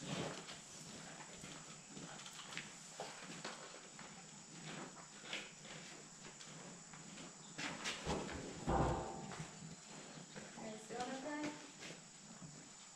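Cattle shifting in a steel squeeze chute: scattered hoof steps and knocks on the floor and metal bars. A louder, deeper knock or bump comes about nine seconds in.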